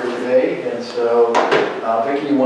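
A person speaking, cut across a little past halfway by a single sharp knock.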